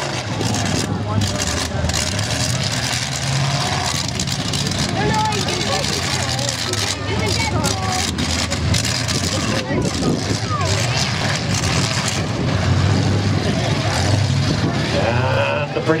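Demolition derby trucks' engines running and revving as the trucks manoeuvre in the dirt arena, with voices over them.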